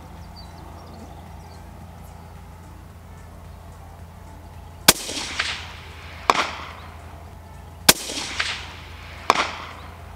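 Two suppressed bolt-action rifle shots about three seconds apart. Each is followed about 1.4 s later by the fainter crack of the bullet striking the steel target plate downrange.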